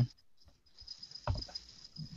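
A moment of near silence, then faint small clicks and rustles over a thin steady high whine from an open microphone on a video call.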